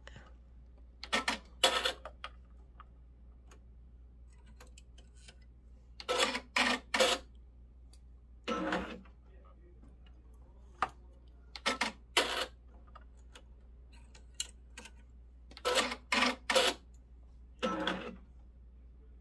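Thread being drawn by hand through the guides and tension of a 10-needle embroidery machine during threading: short rasping pulls in quick groups of two or three, with a few faint clicks between.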